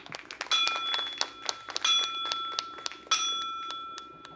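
A small metal percussion instrument rings a high, bell-like tone three times, each stroke left to ring, over a fast, irregular clicking rattle.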